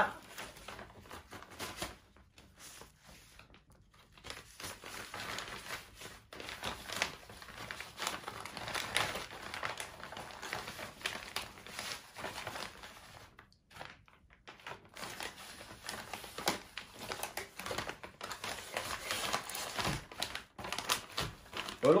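Plastic ration packaging crinkling and rustling in the hands, with scattered small crackles, as a meal pouch is slid into a flameless ration heater bag. It is quieter for the first few seconds and busier after that.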